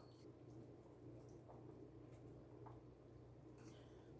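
Near silence: room tone with a steady low hum and a couple of very faint clicks.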